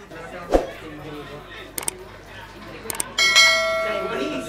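A bell-like metallic ring that starts suddenly about three seconds in and dies away slowly, after a soft thump near the start, with faint voices around.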